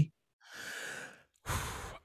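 A person breathing audibly: a soft sigh-like exhale lasting under a second, then a shorter, louder breath near the end.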